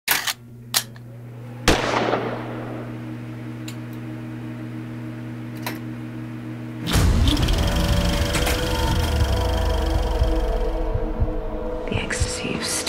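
Intro sound design: several sharp gunshot sound effects in the first two seconds over a steady low drone, then a loud, deep bass-heavy music passage starts about seven seconds in.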